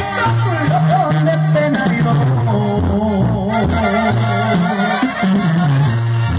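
Mexican banda playing live: a tuba bass line steps from note to note under a wavering brass and reed melody.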